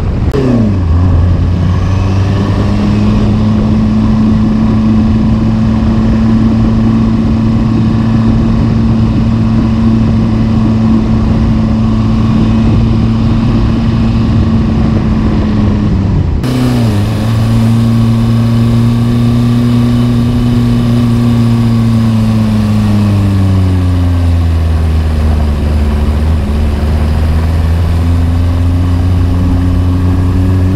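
Car engine droning steadily while driving, with road and tyre noise. The engine note drops about a second in, changes abruptly about halfway through, then dips and climbs again in the second half.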